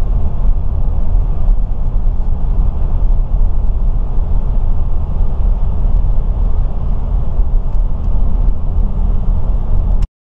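Steady low rumble of a moving car heard from inside the cabin: road and engine noise, heavy in the bass. It cuts off abruptly at the end.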